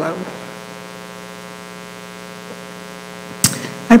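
Steady electrical mains hum with a buzz, carried through the microphone and sound system. A short sharp sound comes near the end, just before a woman's voice starts again.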